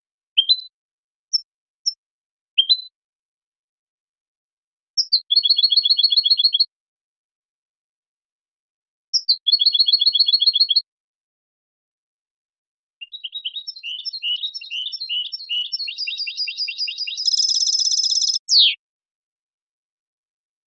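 European goldfinch singing: a few short, high call notes, then two short rapid trills, then a longer twittering phrase of quick notes that ends in a single falling note near the end.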